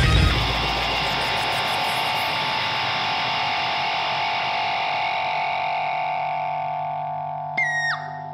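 A distorted electric guitar chord left ringing and slowly fading after the drums and bass stop at the end of a rock song. Near the end a brief high tone drops in pitch.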